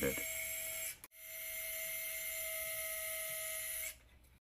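Surgical power wire driver running with a steady high whine as it drives a guide wire into a synthetic bone model of the ankle. It stops for an instant about a second in, then runs on steadily and cuts off just before the end.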